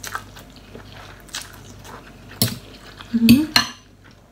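Metal cutlery clinking against a large glass bowl during eating, in a few separate sharp clicks. The loudest moment comes near the end, where a click meets a brief voice sound.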